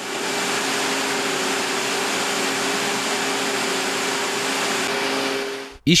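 Circular knitting machines running: a steady whirring machine noise with a couple of faint steady tones in it, which cuts off suddenly near the end.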